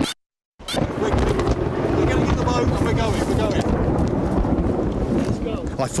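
A half-second of silence, then steady wind buffeting the microphone during a storm, with faint voices under it.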